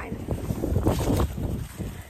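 Wind buffeting the microphone: an irregular low rumble with gusty noise.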